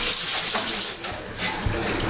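Pump-action water gun, pumped hard, firing a high-pressure jet of water that hisses and splashes for about a second, then stops.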